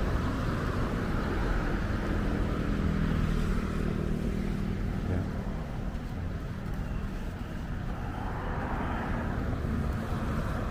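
Motor vehicle running past, its engine note strongest from about one and a half to four seconds in, over a steady low rumble of outdoor traffic.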